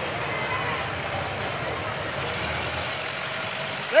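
Ford Model T four-cylinder engines idling with a steady low rumble, under faint crowd chatter.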